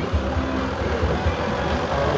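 Low engine rumble from the vehicle moving a flower-covered parade float as it rolls past.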